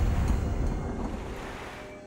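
Alligator thrashing at the side of a boat, heavy splashing water that fades away over the two seconds.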